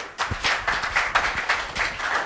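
Audience applauding, many hands clapping in a dense, irregular stream that swells up about a quarter second in.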